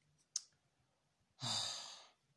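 A man sighs in exasperation, a long breathy exhale that starts about one and a half seconds in and fades out. It follows a single short mouth click about a third of a second in.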